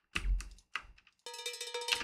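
Cartoon cowbell sound effect being auditioned, pitched up: a strike near the start, a few light clicks, then short rapid shakes with a steady metallic ring over the last part.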